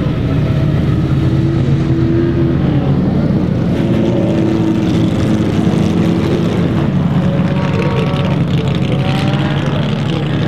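Engines of several vintage open race cars running together as they drive along the ice track, a mix of steady engine notes. Near the end, several engine notes rise as the cars accelerate.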